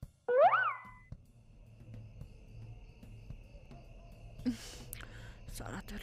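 A cartoon-style comedy "boing" sound effect on the film soundtrack: a short twangy pitched glide that swoops up and back down, a moment after the start, lasting under a second. After it come a faint steady high tone and a low hum, with a brief rush of hiss about four and a half seconds in.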